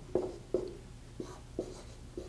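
Dry-erase marker writing on a whiteboard: several short, separate strokes as the number 27 is written under each side of an equation.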